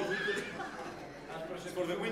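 People talking in a hall, with a high-pitched whinny-like vocal sound a fraction of a second in.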